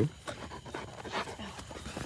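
A dog panting in a run of short, quick breaths.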